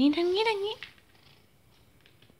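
A cat giving one drawn-out meow, rising in pitch and then wavering, lasting just under a second.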